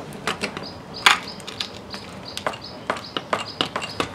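Scattered sharp clicks and knocks, the loudest about a second in, as the striking pad of a portable makiwara board is pressed down underfoot to test its spring.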